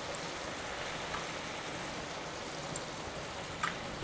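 Masala paste frying in a kadai, bubbling and sizzling with a steady hiss.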